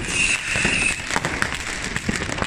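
Fireworks going off all around: rockets and firecrackers cracking and banging in quick succession, with a steady high whistle for most of the first second.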